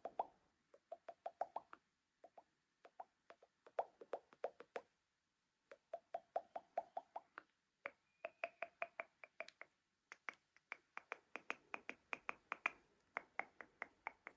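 Silicone suction-cup snapper fidget ring popping in quick runs of about seven pops a second, each run lasting a second or so with short breaks between. About eight seconds in the pops take on a higher pitch.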